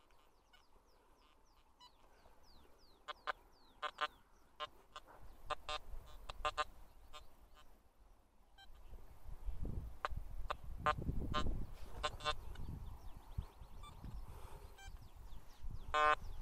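Metal detector giving short, repeated beeps as its coil is swept over the ground, signalling a buried metal target that reads as iron. A low rumble runs under the beeps in the middle.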